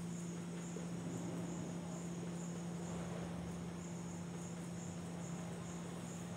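A cricket chirping steadily in the background, with high chirps about twice a second, over a steady low hum.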